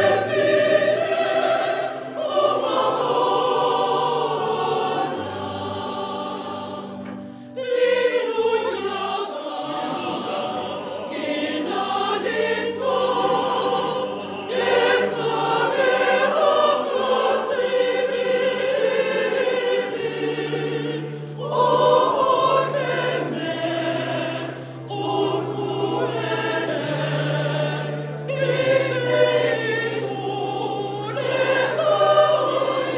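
A church congregation singing a hymn together, many voices at once, in sung phrases with short breaks between them.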